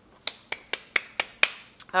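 Chopsticks clicking: a quick, even series of about seven sharp clicks, roughly four a second.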